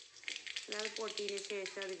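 Hot oil sizzling in a metal wok, a steady hiss. A voice speaks over it from a little way in.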